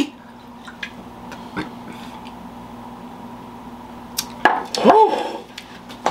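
Quiet room tone with a couple of faint taps of an aluminium can on a wooden table, then, about four and a half seconds in, a short wordless vocal sound from a man that rises and falls in pitch.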